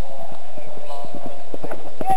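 Hoofbeats of a horse galloping on grass turf, a quick run of drumming strikes that grows stronger near the end as the horse comes close.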